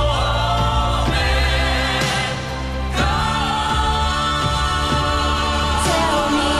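A gospel choir of mixed voices sings over instrumental accompaniment with a steady bass line and a beat about once a second.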